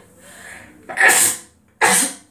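A woman sneezing twice, about a second in and again near the end, after a faint in-breath; she has a cold.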